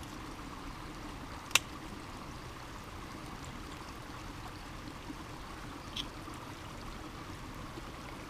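Steady rushing of a nearby creek, with one sharp click about a second and a half in as an aluminium beer can's tab is cracked open. A fainter tick follows near six seconds.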